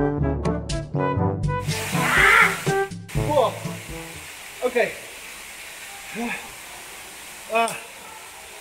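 Brass music that cuts off suddenly about three seconds in, leaving the steady rush of a waterfall. Over it a man gives four short 'ah' exclamations, about one every second and a half, as he walks barefoot over stony ground.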